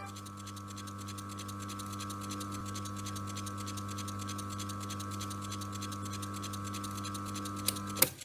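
Faint steady hum with a few held low and mid tones, under a fast, even crackle of small ticks. A sharp click comes just before the end, and the sound then cuts off.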